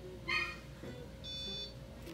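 A brief high-pitched squeak about a quarter second in, then a steady electronic beep lasting about half a second.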